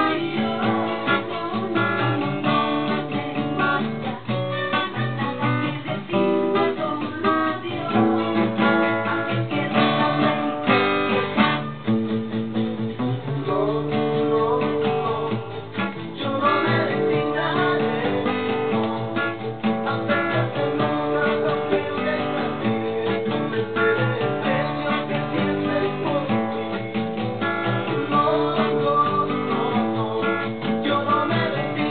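Acoustic guitar strumming a chord accompaniment, moving through chord changes.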